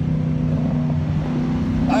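The 4.6-litre V8 of a 2007 Ford Mustang GT California Special running at a steady cruise, heard from inside the cabin as a low, even drone.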